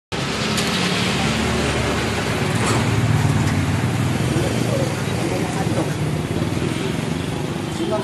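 Street traffic noise: a motor vehicle engine running steadily close by, with passing traffic and indistinct voices.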